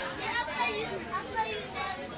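Faint background voices under quiet room sound, with no close speaker.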